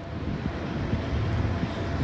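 A steady low rumble of vehicle noise that rises slightly at first, then holds.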